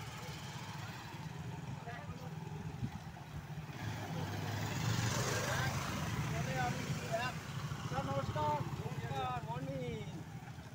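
Motor scooters and motorcycles running past at low speed, one passing close and louder about five seconds in. People's voices join in the second half.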